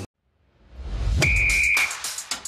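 Sports TV show transition jingle: after half a second of silence, a swell rises into a low bass hit, with a short steady high whistle tone over it, followed by sharp electronic drum hits.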